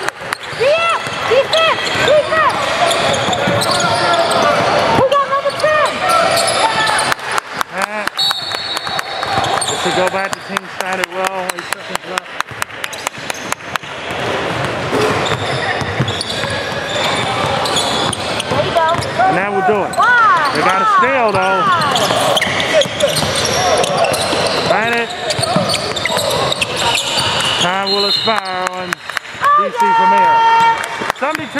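Indoor basketball game sounds: a basketball bouncing on a hardwood court, with players and coaches calling out on and around the court.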